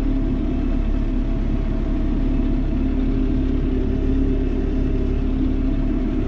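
John Deere tractor's diesel engine running steadily at low revs, about 1100 rpm, heard from inside the cab, with an even low rumble.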